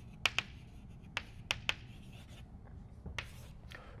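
Chalk writing on a blackboard: a handful of sharp, irregular taps and short strokes as a word is written and underlined.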